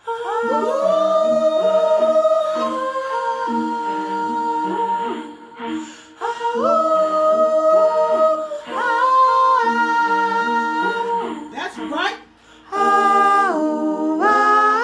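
A song sung in layered vocal harmony, the voices holding long notes in chords, with short breaks in the phrases about six and twelve seconds in.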